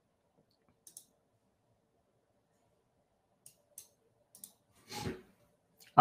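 A few faint, sparse computer mouse clicks spread through an otherwise quiet stretch, with a short soft noise about five seconds in.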